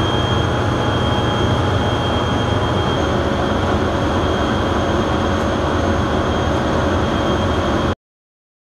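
Industrial machinery of a waste transfer facility running after being started from its control panel: a loud, steady low hum with a thin high whine over it, cutting off abruptly at the very end.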